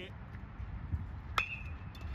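A metal baseball bat strikes the ball once, about one and a half seconds in. It makes a sharp ping with a short ringing tone, over a steady low rumble.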